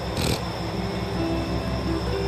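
Soft background music holding sustained notes over a steady low hum, with a brief hiss just after the start.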